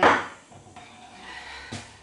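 Kitchen handling noise: a short rustle or scrape right at the start, then a single light knock near the end.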